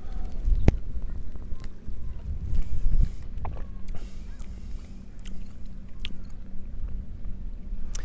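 Wind buffeting the microphone outdoors, an uneven low rumble, with a few faint clicks.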